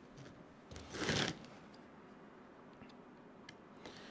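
Hand hex driver turning a screw into a plastic RC truck suspension part: mostly quiet, with a brief scraping rustle about a second in and a few faint ticks.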